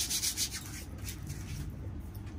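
Hands rubbing briskly together, a dry swishing that is strongest in the first half second and then trails off into a few fainter strokes.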